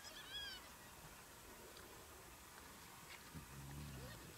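A spotted hyena cub gives one short, high-pitched squeal that rises and falls, about half a second in; the rest is near silence.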